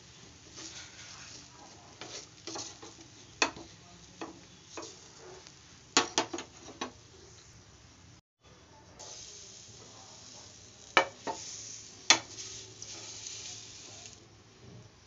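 Plastic spatula scraping and tapping against a nonstick pan in irregular clicks as a thin gram-flour pancake is loosened from the edges and lifted. A faint sizzle of the batter cooking runs underneath.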